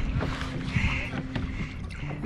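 Wind buffeting the microphone over small waves lapping and slapping against a kayak's hull, a steady low rumble broken by short knocks.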